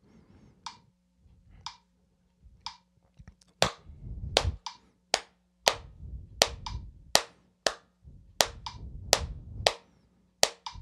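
A phone metronome clicking once a second. From about three and a half seconds in, hand claps join over it in a 3-3-2 rhythm: in every two beats the claps fall three, three, then two sixteenth notes apart. This unevenly spaced pattern is easily mistaken for quarter-note triplets.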